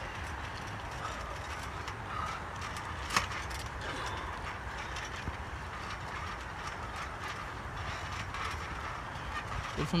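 Trampoline springs and frame creaking and clicking faintly as the wrestlers shift their weight on the mat, with one sharper click about three seconds in, over steady low background noise.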